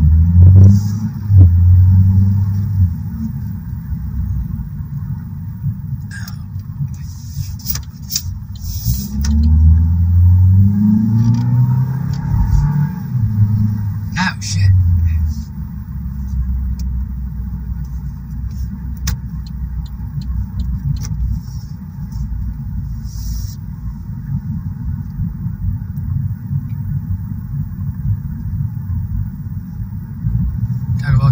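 Car engine and road rumble heard from inside the cabin. The engine note climbs in steps as the car pulls away and gathers speed, then settles into a steady low drone.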